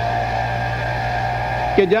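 Steady electrical hum and hiss on an old lecture recording, nearly as loud as the voice. A man's voice resumes near the end.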